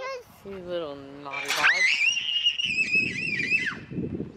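A young child's voice: a short drawn-out call, then a long, very high-pitched squeal held for about two seconds before it drops away near the end.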